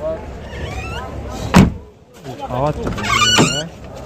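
People talking, with one sharp thump about a second and a half in that is the loudest sound.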